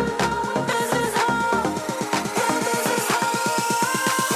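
Electronic dance backing music with a steady beat; about halfway through, the beat quickens into a build-up roll, with a rising sweep near the end.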